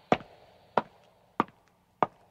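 A regular series of sharp knocks, about one every two-thirds of a second, four in a row at an even pace.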